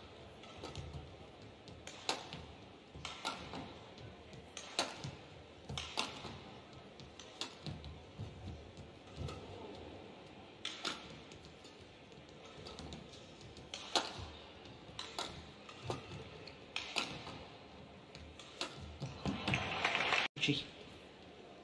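Badminton rally: racquets striking a shuttlecock back and forth, a series of sharp hits roughly a second apart, among players' footfalls on the court. A louder burst of noise comes near the end as the point finishes.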